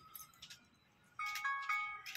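An electronic chime tune of clean stepped beeps, like a phone ringtone, begins about a second in after a quiet start.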